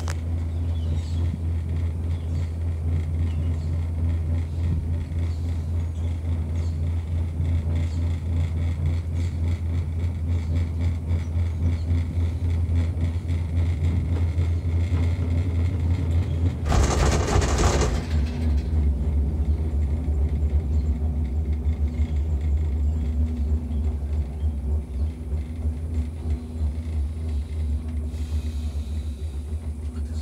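Skyrail cableway gondola cabin riding along its cable with a steady low rumble. About 17 seconds in there is a loud clattering rattle lasting about two seconds as the gondola passes over a support tower.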